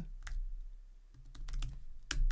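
Typing on a computer keyboard: a few keystrokes, a pause of about half a second, then a quicker run of keys.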